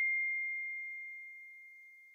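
The ringing tail of a single bell-like ding: one pure high tone dying away slowly.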